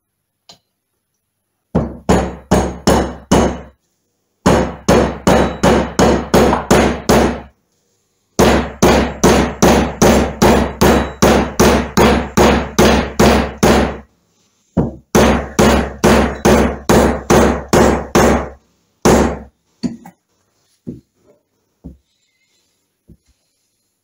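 Copper-faced mallet tapping a needle roller bearing home into a gearbox casing, about four blows a second. The blows come in several long runs with short pauses between, then a single blow and a few light taps near the end.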